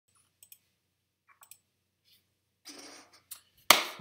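Light clicks of a computer mouse and desk-handling noises: a few scattered clicks, a short rustle or scrape about two and a half seconds in, then a sharper, louder knock near the end.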